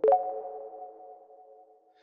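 Closing note of a short electronic intro sting: a single synth chord struck once, ringing and fading away over about two seconds.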